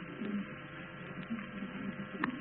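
Steady hum and hiss of an old, narrow-band radio broadcast recording during a pause in the speech.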